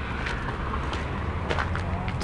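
Sneakers crunching road-salt grains on a concrete walkway, a few faint steps, over a steady low rumble of highway traffic below.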